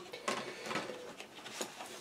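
Faint handling noise: soft rustling with a few light clicks, as of kit parts or packaging being moved.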